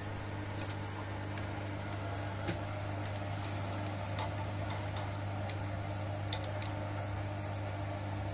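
Steady low mains hum from the amplifier's power transformer, with a few faint small clicks.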